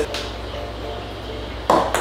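A thrown ping-pong ball landing with one sharp knock near the end. Faint background music runs underneath.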